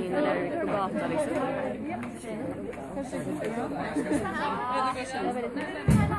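Several people talking at once: overlapping crowd chatter, with no music playing.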